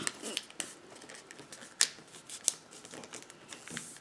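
Origami paper being folded and creased by hand: quiet rustling of the sheet, with two sharp crackles about two seconds in.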